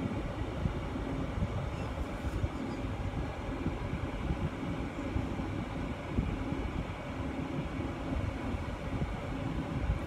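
Steady low rumble with a faint hum and no distinct events.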